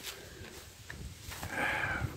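Quiet outdoor pause: a short click right at the start, then a soft rustle in the last half second or so as the dead wild turkey is shifted in the hunter's hands.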